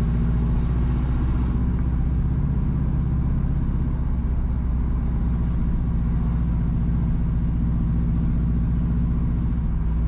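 Car engine and tyre noise heard from inside the moving car: a steady low drone with road hiss above it.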